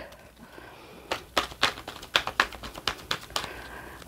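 A deck of oracle cards being shuffled by hand: about a dozen quick, sharp card snaps at an uneven pace, starting about a second in and stopping shortly before the end.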